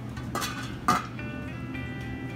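Metal lid put onto a rice cooker's stainless steel pot with two clinks about half a second apart; the second, about a second in, is the loudest and rings briefly. Background music runs underneath.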